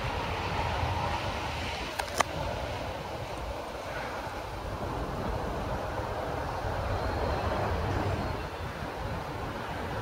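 Steady outdoor background rumble and hiss picked up by a handheld camera microphone, with two sharp clicks close together about two seconds in.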